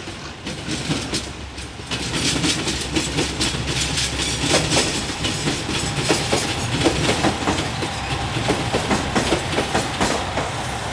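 JR Shikoku diesel limited-express train passing close by, its engine running under a steady rumble as the wheels clack over the rail joints. The sound grows louder about two seconds in, and the wheel clacks come in a regular rhythm from about halfway through.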